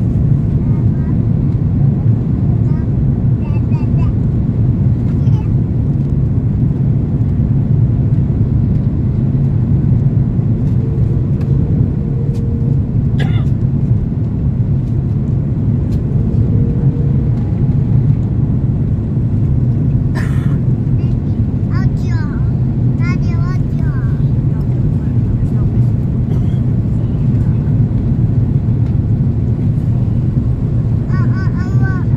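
Steady, deep cabin roar inside an Airbus A330-300 on descent, from airflow over the airframe and its Rolls-Royce Trent 772B engines, heard from a window seat behind the wing.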